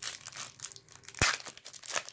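Foil trading-card pack wrapper being torn open and crinkled by hand, with one sharper crack a little past halfway.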